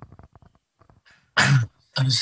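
A few faint clicks, then about a second and a half in one brief, loud vocal burst from a man's voice over a video call, with a falling pitch, heard just before he starts to speak.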